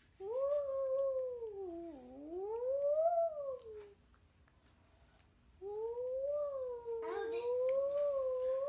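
A young child's voice wailing in imitation of a fire-truck siren, sung as his fire-truck song. There are two long wails: the first sags low and swoops back up, then breaks off. The second starts after a short pause and holds more level, wavering slightly.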